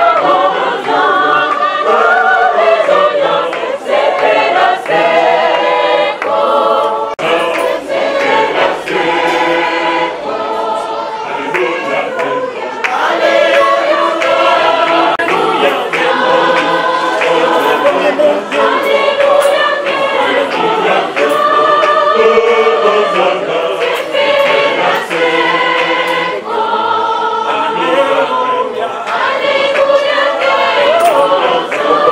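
Church choir singing a hymn, voices carrying on steadily throughout.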